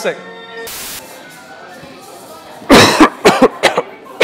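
A man coughing hard, a quick series of harsh coughs about three seconds in, the first the longest. Before it, a held note of music ends and a short hiss follows.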